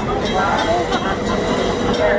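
Amtrak stainless-steel passenger coaches rolling along a station platform, their wheels rumbling steadily on the rails, with a crowd talking close by.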